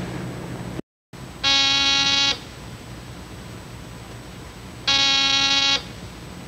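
Electric door buzzer sounding twice, each buzz just under a second long and about three and a half seconds apart, over the steady hiss of an old film soundtrack.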